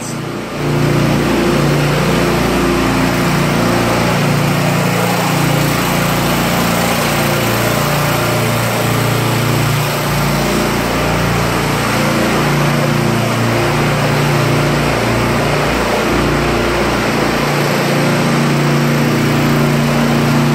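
Small gasoline engine of a cart-mounted pressure washer running steadily under load, with the hiss of its high-pressure water spray hitting wet concrete.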